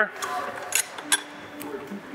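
A few short, light metallic clinks as a travel-trailer window awning's arm fittings are handled and seated into their holding cups.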